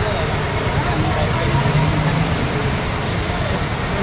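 Heavy rain pouring and floodwater running through a street, a steady rushing hiss, with people's voices talking under it. A low hum swells briefly near the middle.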